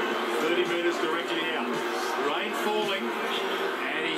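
A television sports highlights package playing from the TV's speaker: background music with voices over it.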